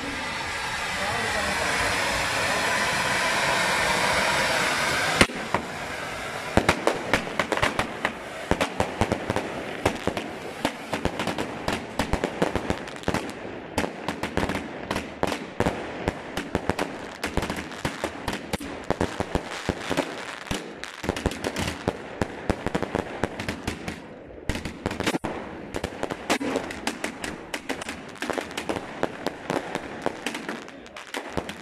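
A ground fountain firework hissing steadily and growing louder, stopping abruptly about five seconds in with a sharp bang. Then aerial fireworks go off in a long, dense run of sharp pops and crackling bursts, several a second.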